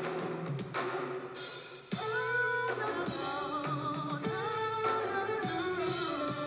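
Live band music with electric guitar and drums under held, wavering melody notes. The level drops briefly just before two seconds in, then the full band comes back in.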